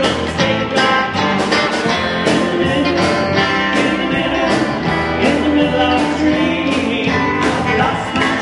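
Live rock band playing with electric guitar and drums over a steady beat, and a man singing.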